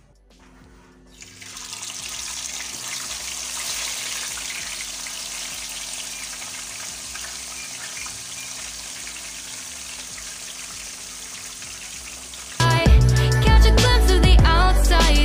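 Fish frying in hot oil in a non-stick frying pan: a steady sizzle that starts about a second in as the fish goes into the oil. Near the end, louder pop music with singing comes in over it.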